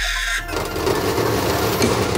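A cartoon sound effect: a high squeal that stops about half a second in, then a steady noisy rush.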